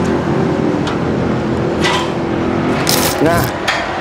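Steady engine and road noise of a motor vehicle running, with a short hiss near the end.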